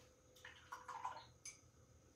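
Near silence with a few faint, light clicks and rattles of paintbrushes being picked through in a jar.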